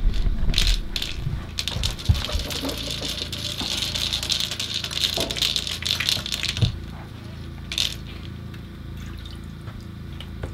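Water splashing and dripping in an ice-fishing hole as a bluegill is hauled up through it by hand on the line, a crackling wet splatter lasting about five seconds, then a brief slap about eight seconds in.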